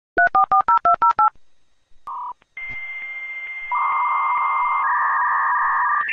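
Dial-up modem connecting: about ten rapid touch-tone digits dialed in quick succession, a short pause and a brief beep, then the modem handshake begins as a hissing noise with a steady high tone, growing louder with a lower tone added about four seconds in.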